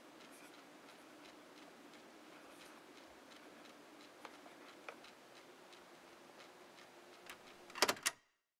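Faint handling sounds as a cassette tape is signed with a marker: a low steady hiss with scattered small ticks, then a short cluster of louder clicks near the end.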